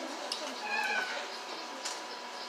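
A short, high meow-like cry lasting about half a second, starting just over half a second in.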